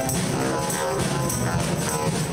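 A school jazz band playing live: saxophones and a drum kit in a full, steady ensemble groove.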